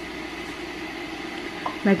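Steady hiss from the stove, where a small pan of water is heating on a lit gas burner.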